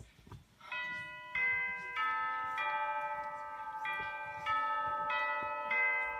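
A slow melody of ringing bell-like chime notes, one struck about every half second or so, each left to ring on under the next.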